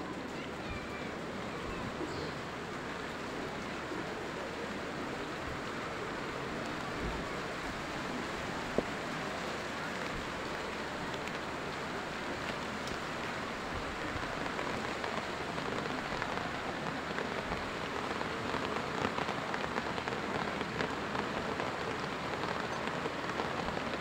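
Steady rain falling, an even hiss that grows slightly louder through the second half, with a single sharp click about nine seconds in.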